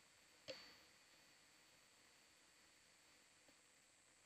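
Near silence: a faint steady hiss with a thin high whine, broken once about half a second in by a sharp click that rings briefly, and a much fainter tick near the end.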